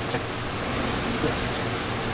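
Steady rushing background noise with a low hum underneath.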